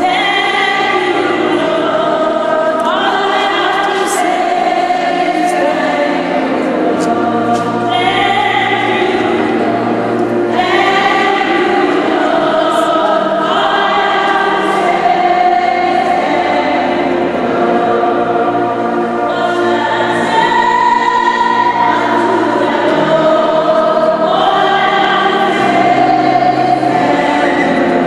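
A congregation singing a hymn together, in long held notes that change every few seconds.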